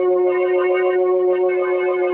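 Radio-drama organ music: one sustained chord held steadily, with a slight waver in its upper notes.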